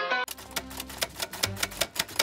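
Background music with plucked guitar cuts off about a quarter second in, then typewriter keys clack rapidly, roughly eight to ten strokes a second, as a sound effect for typed-out on-screen text.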